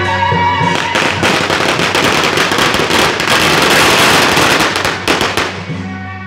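A string of firecrackers going off in rapid, dense crackling from about a second in until just before the end, over band music that comes through clearly again once the firecrackers stop.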